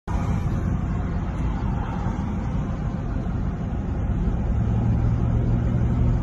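Road and engine noise heard inside a car cabin at highway speed: a steady low rumble, joined about four and a half seconds in by a steady low hum.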